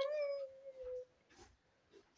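A pet parrot's call: one drawn-out, pitched call lasting about a second, sliding slightly down in pitch, followed by a few faint small clicks.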